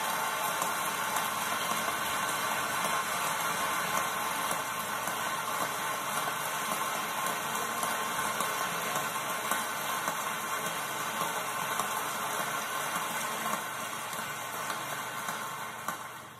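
Large hall audience applauding steadily, heard through a television's speaker, dying away near the end.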